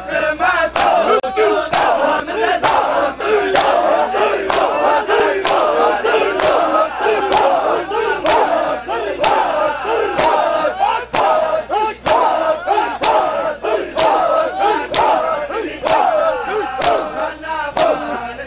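Crowd of men chanting in mourning while beating their chests in matam, the open-hand slaps on bare chests landing in a steady rhythm about twice a second.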